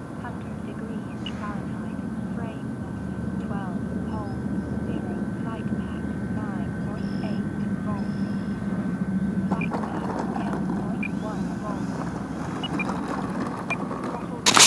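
Electric RC aerobatic plane (Future Model Edge 540T) in flight, its brushless motor and propeller giving a steady drone, a little louder for a while past the middle. Repeated short falling chirps sound over it.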